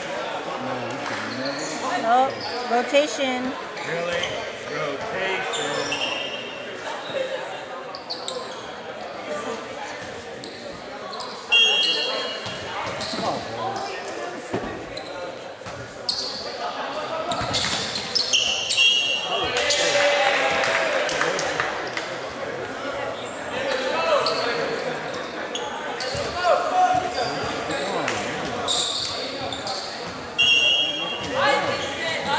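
Volleyball play in a reverberant gymnasium: several sharp smacks of the ball being hit and bouncing off the floor, and short high squeaks of sneakers on the hardwood court, over the chatter and calls of players and onlookers.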